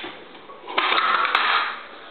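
The paper cutter's blade tool being unsnapped and pulled off the blade edge: a scraping, rattling handling noise about a second long, with a sharp click partway through.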